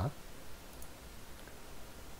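Faint computer mouse clicks over low room hiss.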